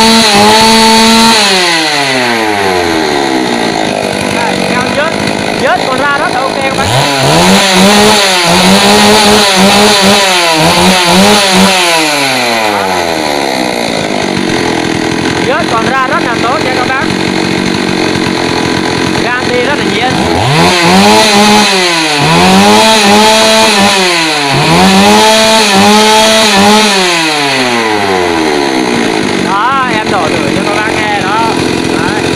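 Stihl MS 381 two-stroke chainsaw engine running, revved by the throttle in quick blips that rise to a high whine and drop back to a steady idle. It starts high and falls to idle about two seconds in. It then gives a group of three revs, idles for several seconds, and gives a group of four revs before settling back to idle.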